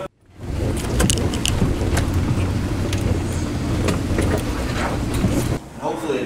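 Steady low rumbling noise with a few faint clicks, starting abruptly after a split second of silence and cutting off suddenly near the end.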